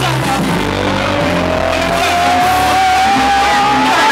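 Loud live concert music from the stage sound system, with a steady bass line and a single tone that glides slowly upward over about three seconds.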